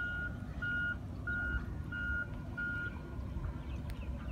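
A vehicle's reversing alarm beeping: five even, single-pitch beeps about two-thirds of a second apart, which stop about three seconds in, over a steady low rumble.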